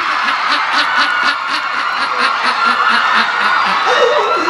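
A room of people laughing, with a man laughing along, in quick repeated bursts of about four a second that keep up steadily throughout.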